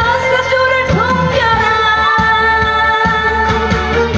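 A woman singing a Korean trot song live over music accompaniment, holding long notes with slight vibrato.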